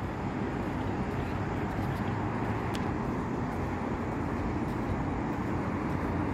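Steady road traffic noise from a freeway, an even rumble and hiss of passing vehicles.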